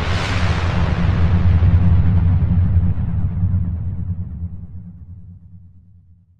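Production-logo sound effect: a synthesized whoosh over a steady low rumbling drone, swelling in the first two seconds and then slowly fading out near the end.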